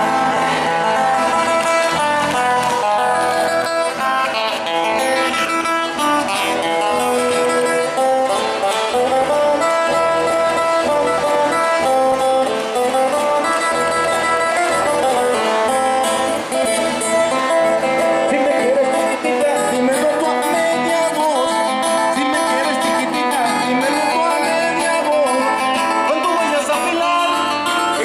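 Two acoustic guitars playing a traditional Mexican dance tune, continuous and at an even level.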